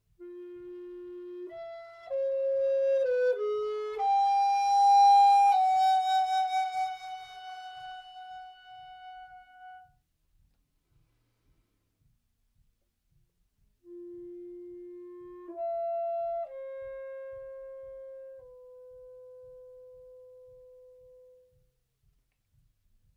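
Helder tenor recorder playing the same short phrase twice with a pause between: each time a soft low note, then a few quick steps up to a loud high note, then a long note that fades away. The soft passages are played with lip control, which only slightly opens the wind channel, to work on very quick changes from pianissimo to forte.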